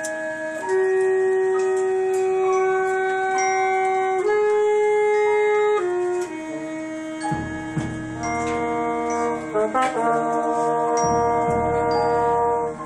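Concert wind band playing in rehearsal: full brass and woodwind chords moving in long held notes. Low drum strokes join a little past halfway.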